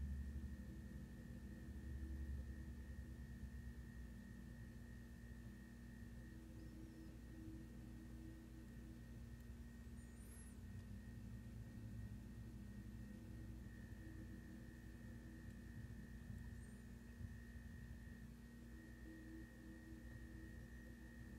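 Faint, steady electrical hum with a thin high tone held throughout: near-silent room tone, with no distinct clicks from the pick.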